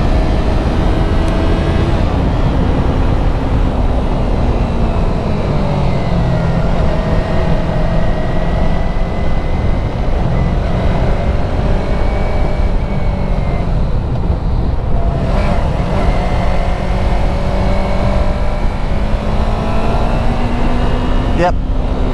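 Yamaha YZF-R3's parallel-twin engine running steadily under way, its pitch dipping slightly and levelling off through the bends, half buried under heavy wind rumble on the microphone.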